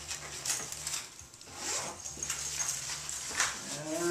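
Camera gear being handled and packed into the padded dividers of a hard case: rustling with a few light knocks and clicks.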